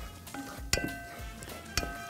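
Soft background music with held notes, and two light knocks of a wooden spatula against a saucepan while a flour-and-ghee roux is stirred.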